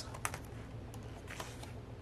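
Glossy photobook pages being turned by hand: a few faint, short paper clicks and a light rustle.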